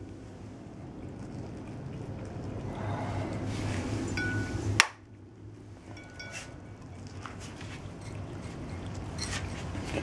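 Rustling noise that swells slowly twice, broken about halfway by a sharp click, with a few light metallic clinks.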